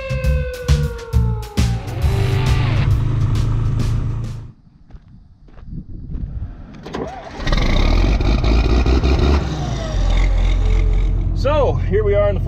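Background music with a beat ends about two seconds in. After a quieter stretch, a John Deere 4640 tractor's six-cylinder diesel engine starts about seven and a half seconds in and settles into a steady run.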